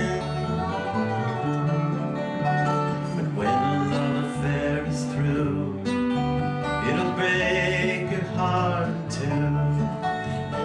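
Live country band playing an instrumental passage: strummed acoustic guitar and electric bass with dobro, the lead notes bending and sliding in pitch.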